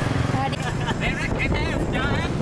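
Low, steady motorbike engine rumble, with faint high-pitched voices calling over it from about half a second in.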